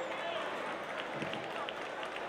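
Audience murmur and scattered voices in a pause in the music; the held keyboard chord ends right at the start.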